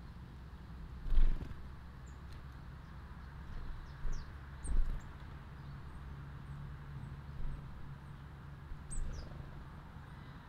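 Small garden songbirds giving short, high chirps a few times over a steady low background hum, with a few brief low thumps, the loudest about a second in.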